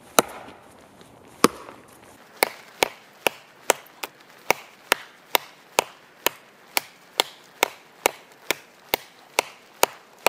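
Schrade Makhaira brush sword chopping into a dead tree trunk, blade striking wood. Two blows come a second or so apart, then a quick, even run of about two blows a second from around two seconds in.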